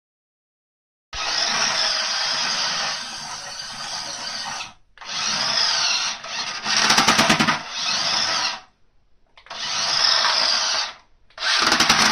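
Toy RC bus with a swapped-in Mini 4WD motor, which the owner believes is a Tamiya Plasma-Dash, buzzing at high revs in five bursts with wavering pitch, starting about a second in. Rapid clattering runs through the third and the last bursts.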